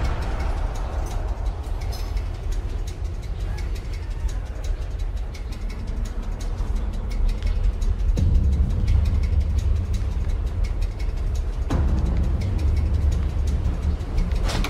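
Steady low rumble of a moving subway train heard from inside the carriage, with a rapid rattle of fine clicks; the rumble grows louder about eight seconds in.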